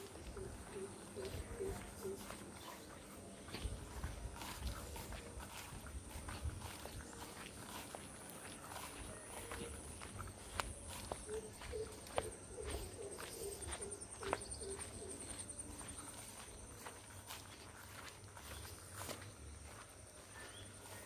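Footsteps on grass and dirt, walking at an even pace. A bird calls in runs of short, low repeated notes near the start and again a little past halfway, over a steady high-pitched insect buzz.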